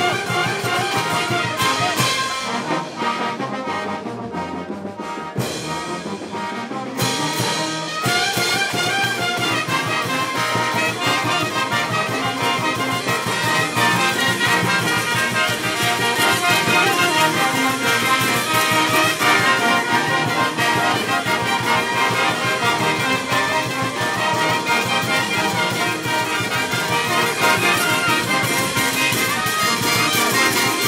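Brass band playing dance music, with trumpets and trombones over a steady beat. The sound thins and drops a little about two seconds in, and the full band comes back in about eight seconds in.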